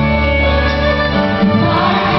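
Church choir and praise band performing a gospel worship song live, the choir singing sustained lines over the band.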